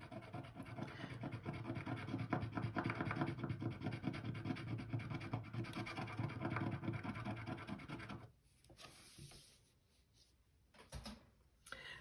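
A quarter scraping the coating off a paper scratch-off card in rapid back-and-forth strokes. The scratching stops about eight seconds in, and a few faint small rubs follow.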